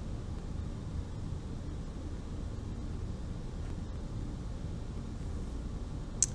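Steady low background rumble, even and unbroken.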